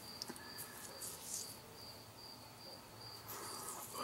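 Faint, high-pitched chirping repeating evenly, about three chirps a second, over quiet room tone.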